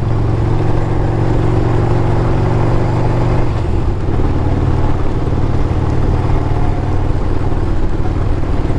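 Panhead V-twin engine of a custom rigid bobber motorcycle running steadily under way, heard from the rider's seat; its note shifts about three and a half seconds in.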